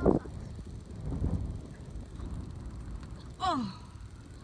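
Children's voices: a loud breathy exclamation right at the start, then a short cry falling in pitch about three and a half seconds in.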